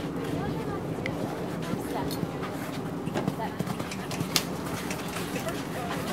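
A horse's hooves cantering on sand arena footing: an uneven run of knocks, the sharpest a little after four seconds in.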